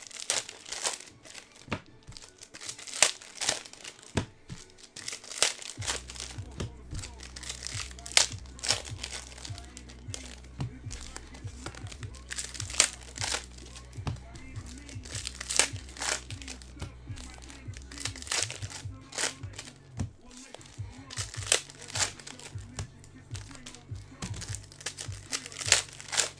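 Foil trading-card pack wrappers being torn open and crinkled, with many quick, irregular crackles throughout as packs are ripped and handled. A steady low hum or music bed comes in about six seconds in.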